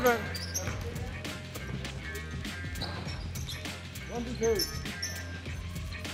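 A basketball bouncing on an indoor court during play, heard as irregular knocks over background music, with a brief shout about four seconds in.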